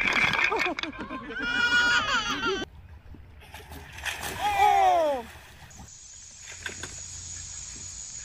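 High-pitched voices calling and exclaiming, with one long falling cry about four to five seconds in, along with some splashing of water.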